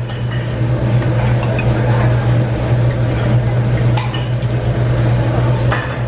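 Steady low hum of restaurant background noise, with a few light clinks of a fork against a plate.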